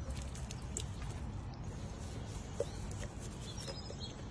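Faint trickle of water poured from a plastic bottle over a hand and hair to rinse out shampoo, with scattered drips and splashes on pavement.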